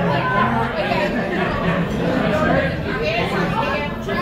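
Overlapping chatter from the audience and band, many voices talking at once in a room. A low held note from the band dies away about half a second in.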